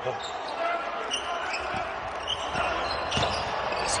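Basketball being dribbled on a hardwood court, a few separate bounces, with faint court noise in a largely empty arena.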